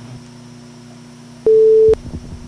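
A single loud electronic beep: one steady pure tone about half a second long, starting and cutting off abruptly about one and a half seconds in, over a faint steady hum.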